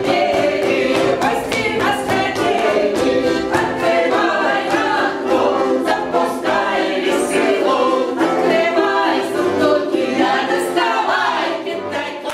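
A Russian folk ensemble singing together in chorus, women's voices leading, to a button accordion accompaniment. The song runs loud and steady throughout.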